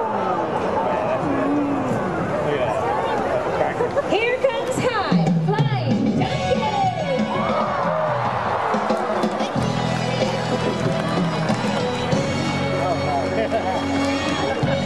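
A large stadium crowd talking and calling out, many voices overlapping; about five seconds in, show music with sustained notes comes in under the crowd and runs on.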